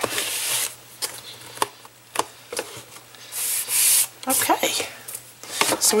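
Hands rubbing and pressing glued paper down flat onto a cardboard cereal box: dry swishes of palm on paper, with a few light clicks and taps in between.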